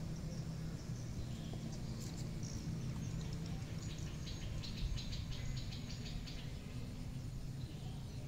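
Outdoor park ambience: a steady low hum of distant traffic, with a run of rapid, faint high-pitched chirping a few seconds in, lasting about three seconds.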